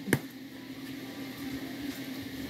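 Quiet room tone with a steady low hum, and one short sharp sound just after the start.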